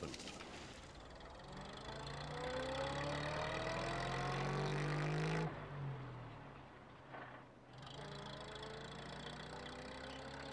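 Small van engine revving under load, rising steadily in pitch for about four seconds. It breaks off suddenly about halfway, then starts rising again near the end.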